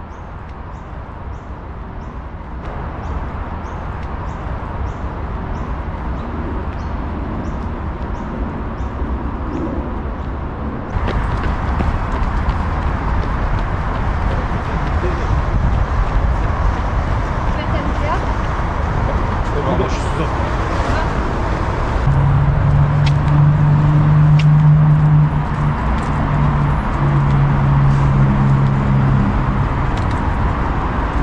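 Outdoor walking ambience: a steady rumble with faint regular high ticks. After a sudden change about a third of the way in, it becomes busier city sound with passers-by talking, and in the last third a steady low hum comes and goes.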